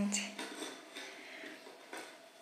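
Quiet handling noise: a light click just after the start, then faint rustling and small knocks.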